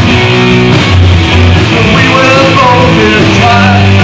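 Live rock band playing loudly: electric guitars, bass guitar and drums.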